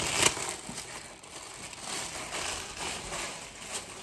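A clear plastic packaging bag crinkling as a pair of pants is pulled out of it. It is loudest in the first half-second, then fades to fainter, uneven rustling.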